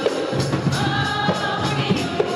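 A choir of women singing a Garífuna hymn together over a steady percussive beat.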